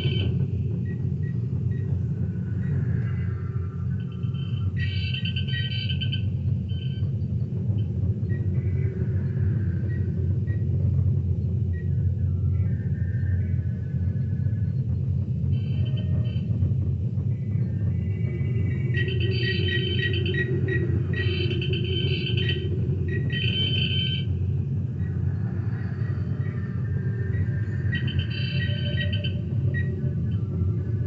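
Star Trek-style starship bridge ambience played back: a steady low engine hum with groups of high computer console bleeps and chirps that come and go every few seconds.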